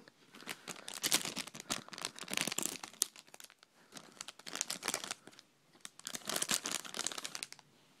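Crinkling and tearing of a plastic Minikins blind-pack wrapper being opened by hand, in irregular bursts of crackly rustling with short pauses.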